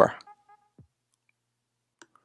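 A spoken word ends at the start, then near silence with faint clicks from the computer as the script is run.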